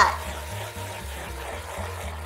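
Countertop blender running steadily, its jar full of a spinach, banana and soy milk smoothie being liquefied, giving an even whirring, liquid-sounding noise.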